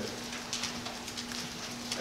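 Paper pages of a Bible rustling and crackling faintly as they are leafed through, over a steady low hum.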